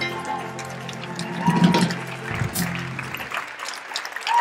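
The final chord of a live band of acoustic guitar, trumpet and trombone rings out and fades away about three and a half seconds in. Audience clapping and cheering begins over it.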